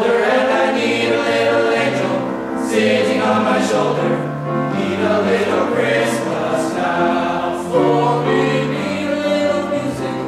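Teenage men's choir singing sustained chords in harmony with piano accompaniment, the notes shifting about once a second with crisp 's' consonants.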